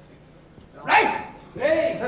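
Two loud, short shouts: one about a second in and a second, longer one near the end, over a quiet hall.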